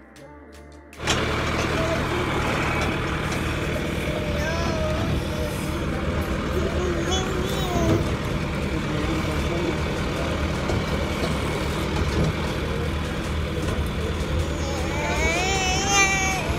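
Steady low engine drone and rumble of a tractor-drawn hayride on the move. It cuts in abruptly about a second in, after a moment of quiet music.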